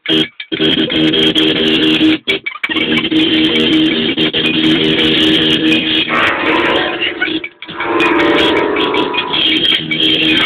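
An accordion holding steady chords together with a one-string guitar, played loud, with short abrupt stops near the start, about two seconds in, and about seven and a half seconds in.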